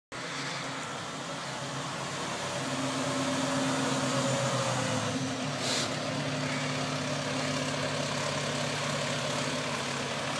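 Engine of a large vehicle idling steadily, with a short hiss about halfway through.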